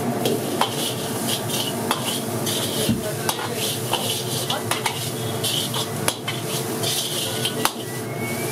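Metal spatula scraping and clanking against a large iron pan as rice with peas is stir-fried and tossed, with many quick scrapes and knocks a second over a steady sizzle.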